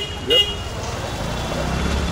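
Busy city street traffic noise: a steady low rumble of engines that grows slightly near the end, with a short high beep about a third of a second in.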